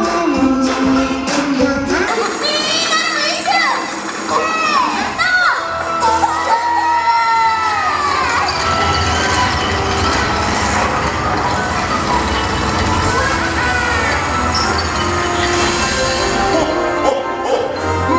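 Christmas stage-show music over loudspeakers, with amplified voices speaking and singing over it and a crowd of children and adults.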